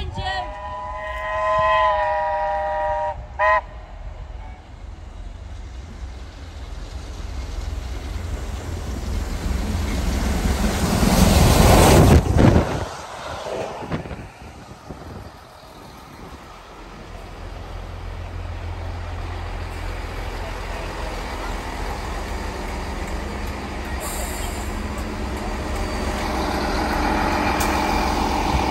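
A train horn sounds for about three seconds, with a short second blast just after. Then the passenger train passes close by, its noise building to a loud peak about twelve seconds in and falling away suddenly, after which the coaches roll past with a steady low rumble.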